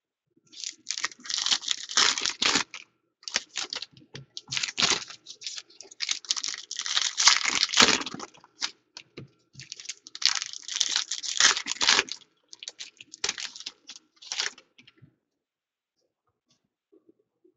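Foil trading-card pack wrappers being torn open and crinkled in the hands, in several separate bursts of tearing and crackling. Between the bursts come lighter clicks of cards being handled and stacked.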